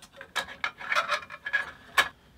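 Irregular scraping and light clicking as a thin steel bandsaw blade is slotted by hand around the plastic wheels of a Burgess BBS-20 bandsaw, ending in one sharp click.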